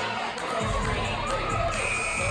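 Crowd cheering and shouting, with music with a bass beat underneath.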